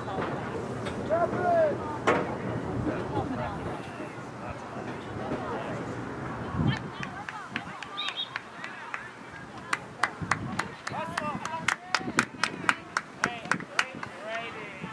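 Girls' voices shouting and calling out across an open field. In the second half a quick run of sharp clicks comes in, about three a second, with the calls going on between them.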